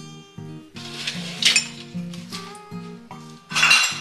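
Dishes and glassware clinking and rattling as they are handled, several times, loudest about one and a half seconds in and in a longer clatter near the end, over gentle acoustic guitar music.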